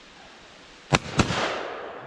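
Two shotgun shots at a flushed pheasant about a second in, a fraction of a second apart, the first the louder, followed by a long rolling echo off the surrounding woods.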